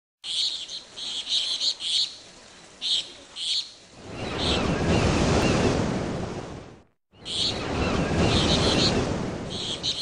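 Birds chirping in short repeated bursts, then a swell of surf-like rushing noise from about four seconds in that fades away. After a brief silent gap near seven seconds, the surf and chirping start again.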